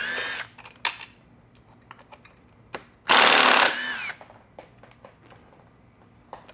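Cordless drill-driver with a T25 Torx bit backing out the stock speaker screws: a short run ending about half a second in and another of about a second starting about three seconds in, each rising and falling in pitch as the motor speeds up and slows. Light clicks of handling come between the runs.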